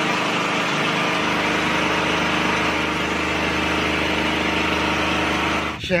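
Small open-frame portable generator running steadily, a loud even engine drone, supplying power during an electricity outage. It cuts off abruptly near the end.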